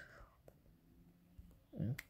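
A pause between spoken phrases: faint room tone with a small click about half a second in, and a man's voice starting again near the end.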